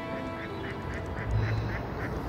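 Ducks quacking in a quick run of short calls, over a low outdoor rumble.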